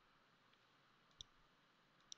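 Near silence with one sharp computer mouse click about a second in.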